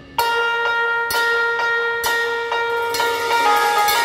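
Band keyboard playing a bell-like melody over a held note, starting suddenly about a quarter second in, with light percussion taps keeping time.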